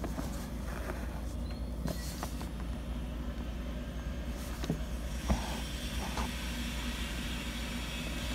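Faint sounds of hand embroidery: a needle clicking a few times and thread drawn through cotton cloth stretched in an embroidery hoop, with a soft hiss from about five seconds in, over a steady low background rumble.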